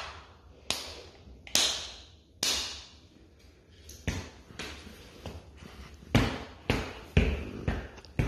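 A series of about ten sharp taps or knocks close to the microphone, irregularly spaced, each dying away quickly.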